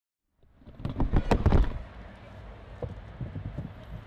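Handling noise inside a car cabin: a quick run of knocks and clicks about a second in, then quieter rustling and the odd click as people settle into the seats.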